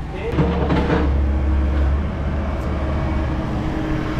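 A small car's engine and road noise, a steady low drone running through most of the clip, with a brief voice near the start.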